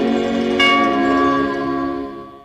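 A bell struck once about half a second in, ringing over a held musical chord in the film's soundtrack; both die away near the end.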